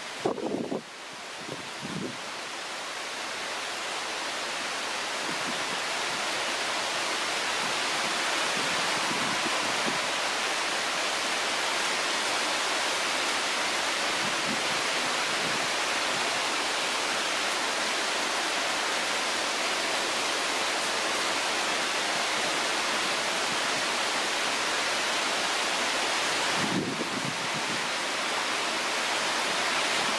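Heavy rain falling, a steady hiss that builds over the first few seconds and then holds even.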